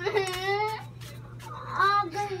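A young child crying, two long wavering wails, one right at the start and a louder one near the end.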